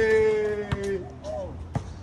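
A person's drawn-out excited yell, one long high held note that slowly falls in pitch and breaks off about a second in. A short second call follows, with a couple of sharp knocks.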